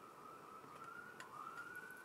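A faint high tone that slowly wavers up and down in pitch, with a light tick about a second in.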